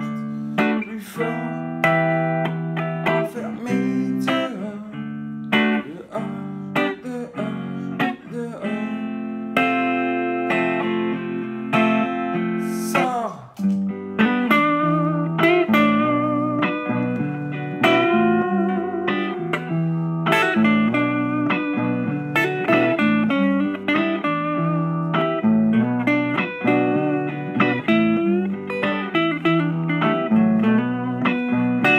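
Semi-hollow-body electric guitar played with a pick: a continuous passage of single notes and chords with some bent and wavering notes.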